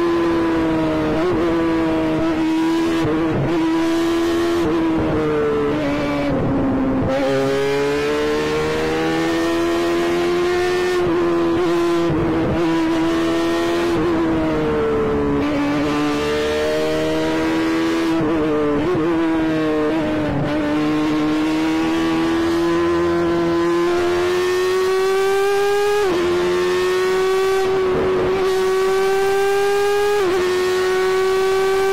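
F1000 formula car's 1000 cc Suzuki motorcycle engine, heard close from the cockpit at racing speed. It is held high in the rev range, and its note breaks briefly at each quick gear change, several times, before climbing again.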